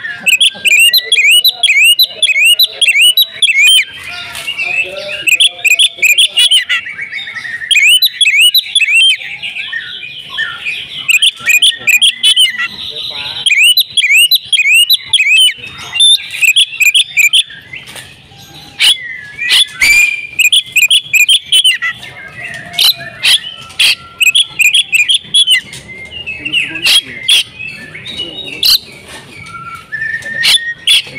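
Oriental magpie-robin singing loudly in fast runs of repeated chirped and whistled notes, broken by short pauses, with sharp clicking notes mixed in during the second half.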